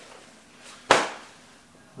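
A single sharp clack about a second in, from hard gear being set down or picked up on a tabletop, dying away quickly.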